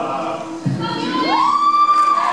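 An a cappella singer's voice gliding sharply up into a high falsetto note and holding it, like a siren, over lower sustained backing voices. A short low thump comes just before the slide.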